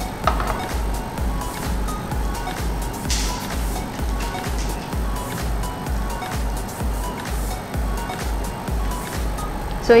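Background music with a steady bass beat, about two beats a second.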